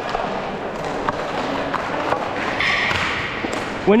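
Inline skate wheels rolling on a plastic tile rink floor, with scattered light knocks of sticks and pucks and a brief higher scrape a little under three seconds in.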